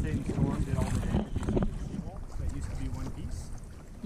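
Wind rumbling on the microphone of a camera on a kayak's bow over open water, with faint talk in the first second and a half.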